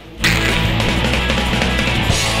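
Loud background music that starts suddenly about a quarter of a second in.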